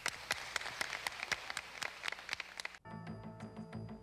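Audience applauding. About three seconds in, the applause cuts off abruptly and gives way to music with held tones and evenly spaced drum strikes.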